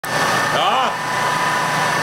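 Schlosser SV Tronic vibration system on a concrete block machine running: a loud, steady machine noise with several steady whining tones held throughout.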